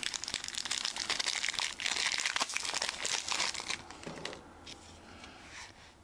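Foil Yu-Gi-Oh booster pack wrapper crinkling in the fingers as it is opened, a dense run of fine crackles that dies down to quieter handling about four seconds in.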